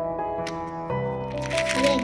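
Background music with a steady tune. Near the end, a short loud crackling burst of plastic as the snap lid of a small round plastic bead tub is pried off.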